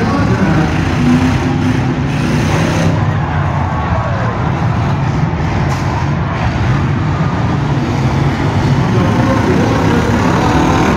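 Several demolition derby cars' engines running and revving hard at once, a loud, steady engine noise.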